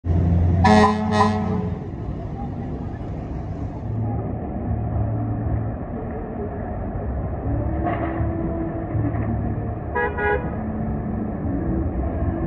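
A fire engine's horn gives two short blasts about a second in, a fainter toot near eight seconds, and two more short blasts about ten seconds in. Underneath is the low sound of its engine running. The horn signals that the truck is leaving the station on a call.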